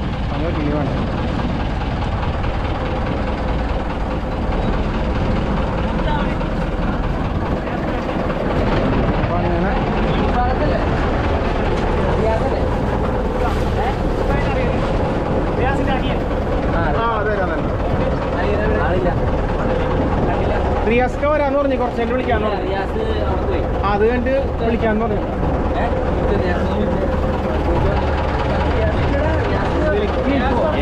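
A boat engine running steadily, a constant low drone with a steady hum, while people talk over it.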